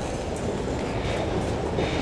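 A steady rumbling noise with faint clicks recurring under a second apart, played as a stage sound effect.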